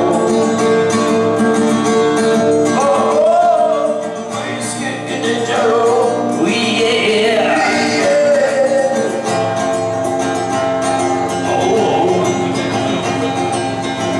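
Acoustic guitar played live with a man singing over it, a song with steady chords and a wavering vocal line.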